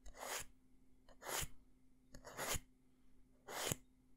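Small wooden lid scratched close to the microphone in four short, even strokes, about one a second.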